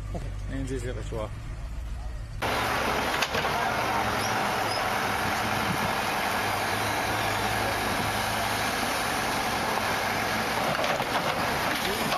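A low, steady engine hum from a truck, then an abrupt jump to a louder, steady rushing noise of machinery at an excavation site, where an excavator works at a trench.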